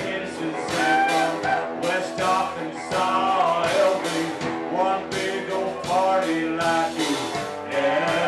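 A live band playing a country-blues rock song: acoustic and electric guitars over a drum kit keeping a steady beat.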